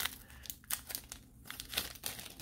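Paper wrapper of a 1981 Donruss baseball card pack crinkling in the hands as the cards are slid out, in several short, faint rustles.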